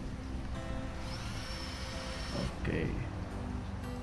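RYU RCD 12V cordless drill run briefly at no load by a trigger pull, giving a high steady motor whine that glides up as it starts and stops after about a second and a half.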